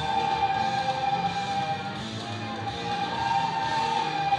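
A large group of children playing soprano recorders together, holding long notes of a slow tune, with fainter lower notes underneath.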